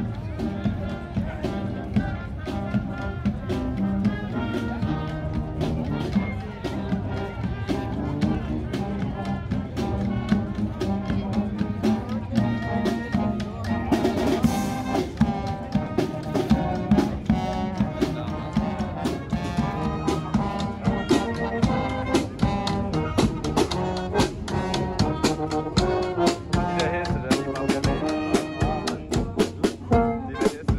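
Marching band playing a march on brass instruments (trumpets, trombones and sousaphone) with a regular beat.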